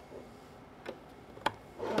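Light rubbing and handling of a cable, with a small tick and then a sharp click about one and a half seconds in as a USB plug is pushed into its socket on the back of a plastic camera hood.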